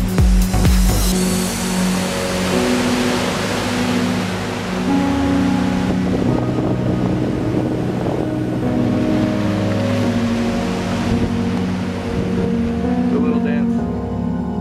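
Background music: sustained chords that change every second or two, after a beat that stops about a second in.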